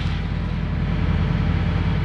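Diesel truck engine idling: a steady low drone.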